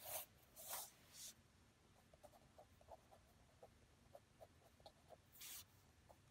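Faint paper-and-wood rustles as hands slide a paper Zentangle tile across a wooden table, three brief brushes at first and one more near the end. Between them are soft, light scratches and ticks of a fine-tipped pen drawing on the tile.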